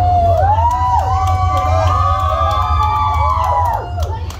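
A group of children cheering and shouting together in high, overlapping voices, easing off near the end, over a steady low rumble.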